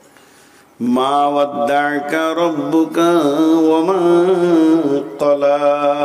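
A man's voice chanting a waz sermon passage in a long, melodic sung line through a microphone and sound system, coming in about a second in and holding drawn-out notes.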